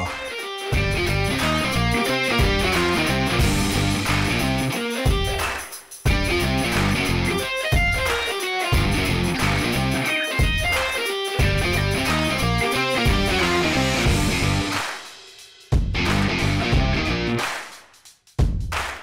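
Background music: an electric guitar piece with bass and a steady beat, with a couple of brief dropouts.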